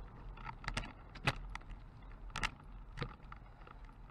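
Irregular light rattling and sharp clicks, several a second, like keys or loose gear jangling as the camera's carrier is moved along a concrete sidewalk, over a steady low hum.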